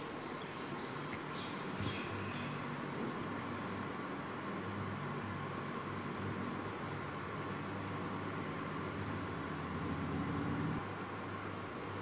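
Induction cooktop running while it heats oil in a wok: a steady fan hum with a faint high whine that stops near the end.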